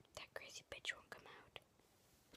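A boy whispering a few words quietly, breathy and without voice, in the first second and a half.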